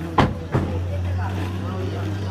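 A car door clunking: a sharp knock a fifth of a second in, then a smaller one half a second in, over a steady low hum and faint voices.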